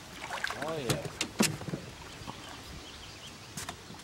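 A few sharp clicks and knocks, the loudest about a second and a half in and one more near the end, over a faint steady background.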